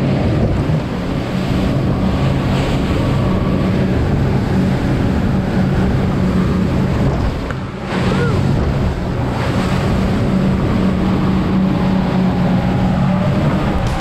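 Twin outboard motors running at speed, a steady low drone, with the boat's hull pounding through choppy sea, spray and heavy wind on the microphone.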